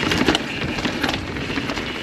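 Mountain bike rolling fast down a bare rock slab: a steady rushing tyre noise with the bike's rattles and a few sharp knocks in the first second.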